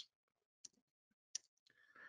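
Near silence with two faint, short clicks, a little under a second apart.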